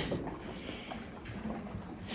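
Faint sounds of a horse eating from a feed pan: quiet chewing with a few small ticks.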